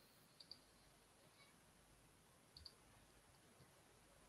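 Near silence with a few faint computer-mouse clicks: a quick pair about half a second in, a single one a little later, and another quick pair past two and a half seconds.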